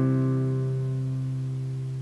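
A C major chord on a nylon-string classical guitar, left to ring and fading slowly.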